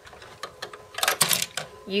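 Plastic LEGO pieces clicking and rattling, in a quick burst of clicks about a second in, as the trash compactor section of the LEGO Death Star set is handled.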